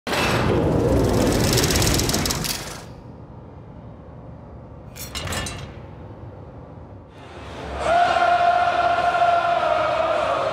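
Sound effects of a broadcast title graphic: a loud crashing, shattering hit at the start, then a short sharp clank about five seconds in. From about eight seconds a stadium crowd roars loudly, with a long held pitched note running over the noise.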